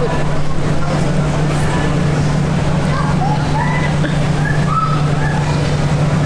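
A steady, loud low hum, like machinery or building ventilation, running unchanged, with a few faint distant voices over it.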